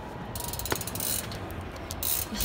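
Bicycle wheel hub ratchet clicking rapidly as the removed wheel is turned, the rapid clicking lasting under a second, then a few scattered clicks.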